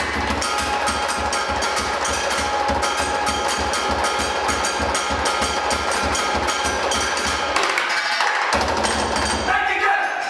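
Percussion ensemble playing a fast, steady groove with drumsticks on plastic beer crates filled with glass bottles and on a large plastic barrel: a dense clatter of stick hits and clinks over deep barrel beats. The deep beats drop out for about a second near the end, return, and the piece stops on a group shout.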